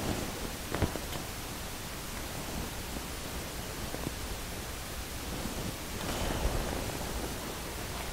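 Steady background hiss with faint rustling as a canvas panel is handled and set down, and a single light click about a second in.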